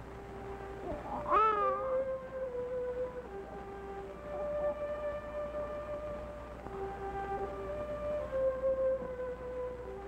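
Soft orchestral film score of slow, held notes moving in gentle steps. About a second in, a brief wailing cry sweeps up and falls back over the music.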